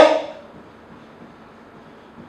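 A man's spoken word trailing off at the very start, then quiet room tone with faint scratching of a marker being written on a whiteboard.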